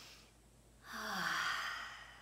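A woman breathes in softly, then lets out a long, voiced sigh about a second in, its pitch falling.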